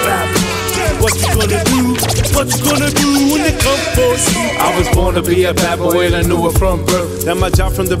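Hip hop track: a beat with regular drum hits and a steady bass line, with a rapped vocal over it.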